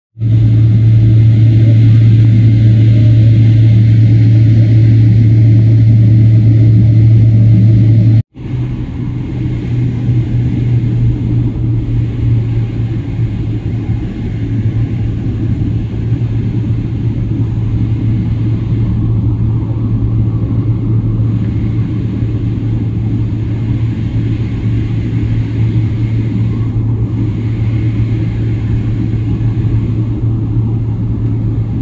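Steady low hum and rumble inside an airliner cabin as the plane taxis with its engines running. The sound cuts out for an instant about eight seconds in, then carries on a little quieter.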